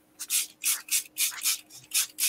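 Small pump-spray bottle of water-based ink being pumped repeatedly onto wet paper: short hisses of mist, about three a second.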